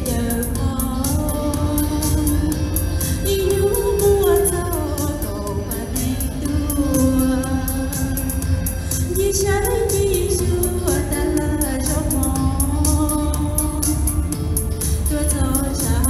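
A woman singing into a microphone over backing music with a steady beat.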